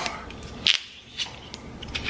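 Cork coming out of a small bottle of Rondel Brut sparkling wine with one short, sharp release about two-thirds of a second in rather than a loud pop, followed by a couple of faint clicks.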